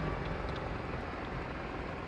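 Steady low rumble of slow-moving traffic and the car's own running, heard from inside the car's cabin.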